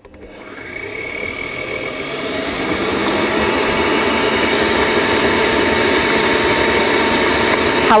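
Electric stand mixer running, beating butter, egg, sugar and baking powder for tart dough: a steady motor whine that speeds up and grows louder over the first few seconds, then holds level until it is switched off at the end.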